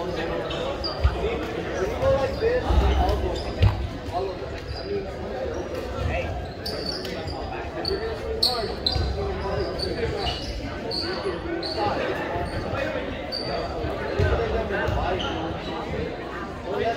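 Volleyballs being hit and bouncing off a hardwood gym floor in an echoing gymnasium, with scattered sharp smacks, short high squeaks, and a running chatter of players' voices.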